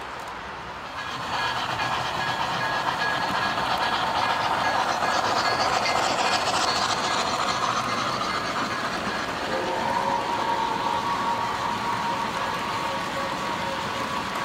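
O gauge model freight train rolling past close by, its wheels running on the metal track in a steady rumble that gets louder about a second in. From about nine and a half seconds a steady tone of a few pitches sounds over it.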